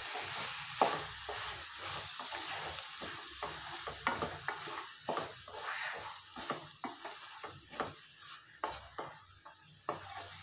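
Wooden spatula stirring and scraping mutton pieces and onions around a coated kadai while the thick masala sizzles as it is fried down dry. Irregular scrapes and light knocks of the spatula against the pan, coming faster in the second half.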